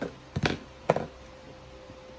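Two short knocks about half a second apart as a plastic seasoning shaker bottle is picked up and handled.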